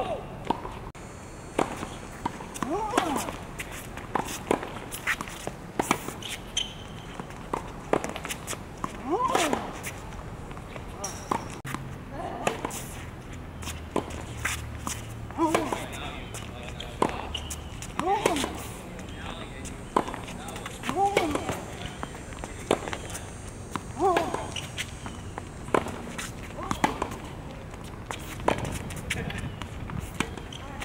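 Tennis rally on a hard court: a steady run of sharp racket strikes and ball bounces, with short squeaks from sneakers on the court surface every couple of seconds.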